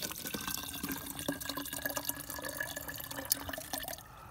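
Muddy water pouring from a collapsible fabric dog bowl into the narrow mouth of a plastic water bottle, a steady splashing stream as the bottle fills, which stops right at the end.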